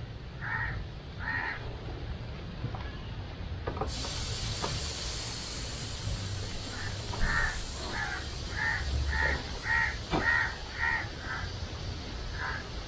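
Crows cawing over and over: a few caws at the start, then a run of about a dozen at roughly two a second in the second half. A steady hiss comes in about four seconds in, with a few light clicks.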